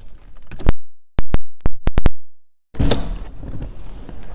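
The audio drops out to dead silence, broken by about six sharp, very loud clicks. Near the end comes a sudden thunk of the car door being opened, then handling noise.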